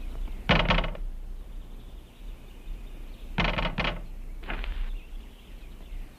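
A shop door being opened and shut: short rattling bursts, one about half a second in and two more near the middle.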